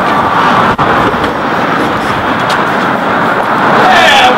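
Steady, loud city street traffic noise, with a momentary dropout just under a second in.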